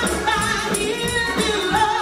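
Gospel music: voices singing over instrumental accompaniment, with a steady percussion beat.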